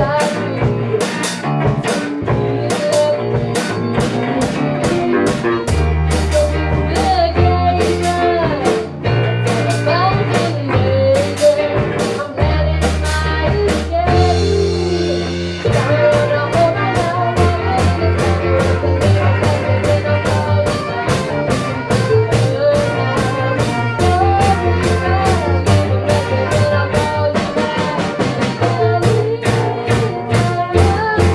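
Live rock band rehearsing a song: a girl's lead vocal over drum kit, electric guitars and bass. The drums drop out briefly about halfway through, then the full band comes back in.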